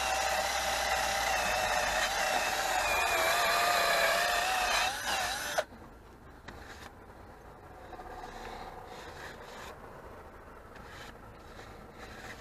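Cordless drill spinning a wire wheel brush against a rusty steel brake drum to clean off the rust. It makes a steady whine that wavers as the brush bears on the metal and cuts off suddenly about five and a half seconds in, followed by quieter knocks of handling.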